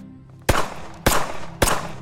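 Pistol shots fired one after another at an even pace, about two a second: three sharp shots, with a fourth right at the end, each followed by a short ringing tail.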